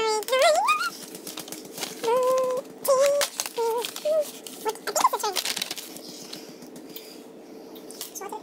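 A young child's high-pitched voice making short wordless exclamations and a rising squeal in the first half, mixed with small clicks and crinkles of cardboard as a chocolate advent calendar door is pushed open.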